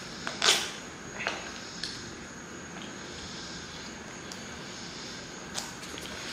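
A few short, sharp clicks and knocks of objects being handled, the loudest about half a second in with a brief ring, then smaller ones spaced out, over a faint steady room hum with a thin high whine.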